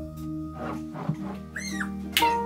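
Background music with held notes, and about three-quarters of the way through a corgi gives one short high whine that rises and falls.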